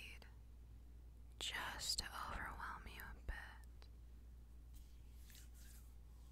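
A woman's breathy whispered vocal sounds close to the microphone, mostly between about one and a half and three and a half seconds in, with a small click near the end of them and faint breaths afterwards over a steady low hum.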